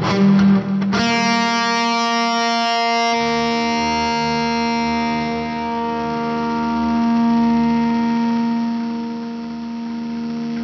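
Starcaster electric guitar played through a Boss IR-200 amp and cab simulator with a driven tone. A few quick picked notes, then a chord struck about a second in that is left to ring and sustain; its brighter upper notes fade after a couple of seconds while the lower notes hold on.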